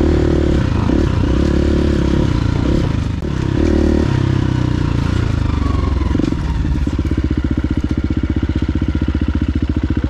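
KTM 350 EXC-F single-cylinder four-stroke dirt bike engine, running under changing throttle while riding, then settling to a steady, evenly pulsing idle from about seven seconds in.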